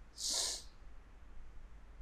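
A man's short, sharp breath through the nose, about half a second long, near the start. After it there is only faint room noise over a steady low hum.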